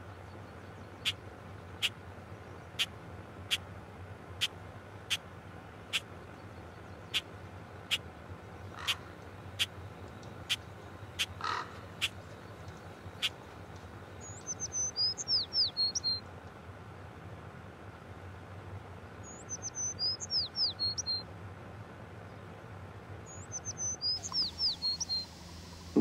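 Birds calling in bushland: three bouts of high, falling whistled calls in the second half. These come after a run of sharp, evenly spaced clicks, about one a second, through the first half, over a low steady background.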